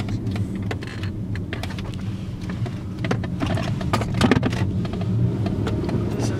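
Steady low road and engine rumble inside a moving car's cabin, with scattered light clicks and knocks.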